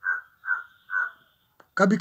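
A bird calling three short times in quick succession, about half a second apart.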